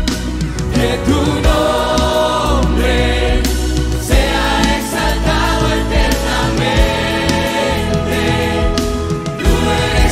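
Church choir singing a Spanish-language worship song over band accompaniment with a steady beat.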